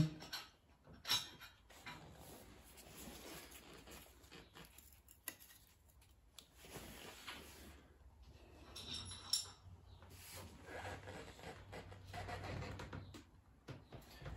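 Faint, scattered light metallic clicks and handling noise as the Belleville spring is set onto the clutch pressure plate, over quiet room tone.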